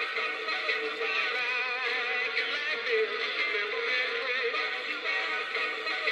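Gemmy Peppermint Spinning Snowman animated toy playing its song, a recorded singing voice over music, through its small built-in speaker. The sound is thin, with no bass.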